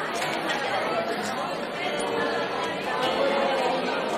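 Audience chatter filling a large hall: many people talking at once, with no single voice standing out.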